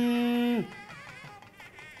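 A long chanted note held on one pitch slides down and stops about half a second in, followed by faint background sound.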